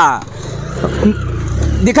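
Motorcycle engine running at low revs, a steady low rumble that grows slightly louder toward the end.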